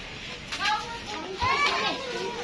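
Voices talking in the background, with a single dull knock about a second and a half in.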